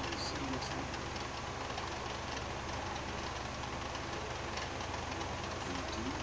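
Animated film soundtrack playing from a TV speaker, picked up across the room, with faint voices over a steady low hum and hiss.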